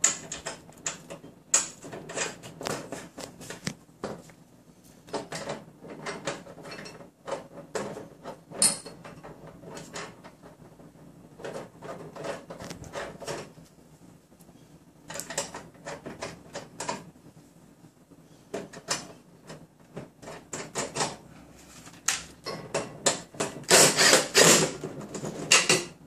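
Irregular metallic clicks, taps and rattles of steel mounting brackets and bolts being handled and fitted against a sheet-metal RF shield enclosure, with a louder stretch of clatter near the end.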